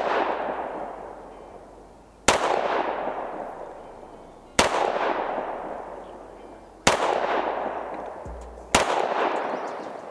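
Pistol fired in slow, aimed single shots: four sharp shots about two seconds apart, each followed by a long echo that fades away before the next.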